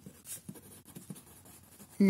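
Pen writing on lined notebook paper: faint, quick scratching strokes as a word is written out.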